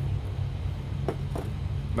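Steady low rumble and hum of a motor vehicle engine, with two faint short clicks a little after a second in.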